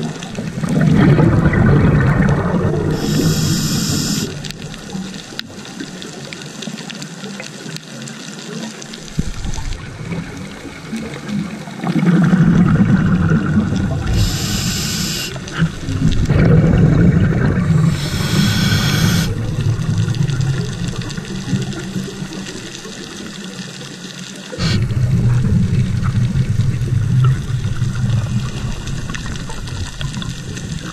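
A scuba diver breathing through a regulator, heard underwater: four long, low bubbling surges of exhaled air, with short hisses of inhaling in between.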